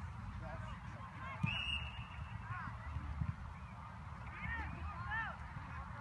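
Geese honking several times, the calls coming thicker in the second half, over a low rumble of wind on the microphone.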